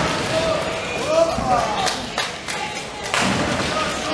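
Sharp knocks of nine-pin bowling balls and pins on the lanes of a bowling hall, three of them, about two seconds in and again about three seconds in, over a background of voices.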